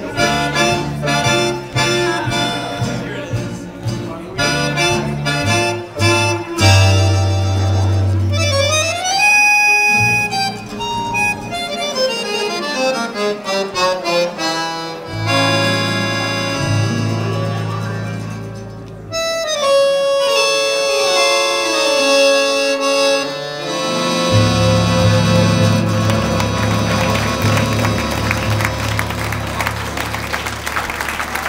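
Small acoustic jazz band playing an instrumental passage in 1920s–30s hot-jazz style: accordion and clarinet lead over upright bass, guitar and piano. Short rhythmic chords come first, then held notes and sliding runs, with the whole band louder for the last several seconds.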